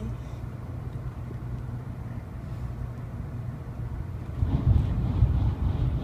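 Low rumble of a moving passenger train, heard from inside the carriage, growing louder about four and a half seconds in.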